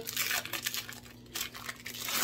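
Crinkling and rustling of kitchen packaging as shredded cheese is added. It is loudest in the first half second, followed by a few light ticks.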